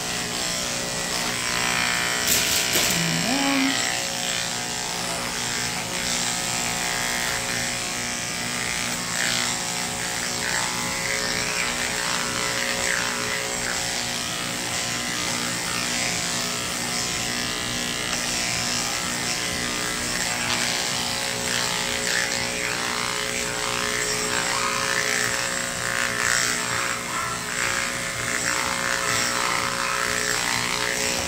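Cordless electric dog grooming clipper with a clip comb attachment running steadily as it is drawn through a schnauzer's coat, a constant motor hum.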